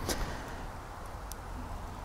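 Two wood-gas stick stoves, a Solo Stove Lite and a Lixada tower stove, burning twigs at full wood gasification: a faint steady flame noise with a couple of small crackles, one near the start and one a little past the middle.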